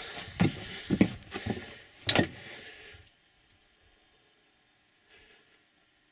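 Several crunching footsteps on the rocky floor of a mine tunnel over a faint hiss, lasting about three seconds, then near silence.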